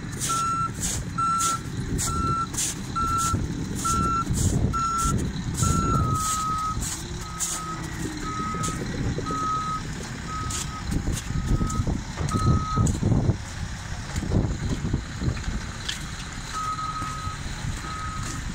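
Reversing alarms on heavy earthmoving machines beeping at about two beeps a second, over the low rumble of their diesel engines. About six seconds in, a slightly lower-pitched, slower alarm takes over; the beeping stops for a few seconds and returns near the end.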